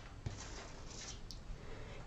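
Quiet room tone with a faint click about a quarter of a second in.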